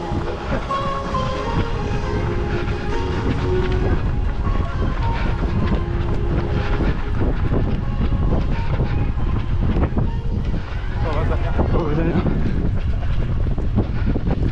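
Wind and movement rumbling over the microphone of a camera carried by a runner at race pace, with runners' footfalls on the synthetic track under it.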